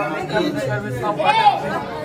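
People talking: voices chattering, with no single clear speaker.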